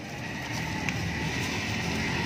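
Road traffic rumble, getting louder about half a second in and holding steady, as of a vehicle going past.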